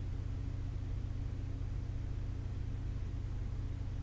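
A steady low hum with faint hiss, unchanging throughout, with no distinct sound events.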